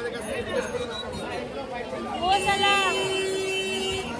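People chattering and exclaiming, with a drawn-out call that rises and falls in pitch, then a steady held tone lasting over a second, in the second half.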